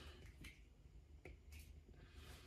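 Near silence with a few faint, short clicks, the small sounds of clothes and tags being handled.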